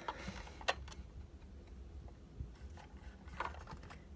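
Faint handling noise from a 1/24 diecast model car being turned over in the hands: a few light clicks and rubs over low room noise.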